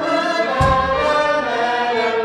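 Two violins and an end-blown flute playing a melody in the Nahawand mode, with men's voices singing along. There is a low thump a little past half a second in.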